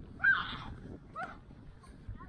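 A child's short high-pitched shout just after the start, with a fainter cry about a second later.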